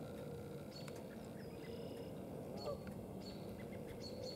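Faint, distant Canada goose honks: a few short, scattered calls over a quiet background.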